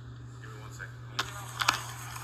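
Rustling and sharp knocks of movement against a police body camera as the wearer walks, starting about a second in, over a steady low electrical hum. Faint voices are underneath.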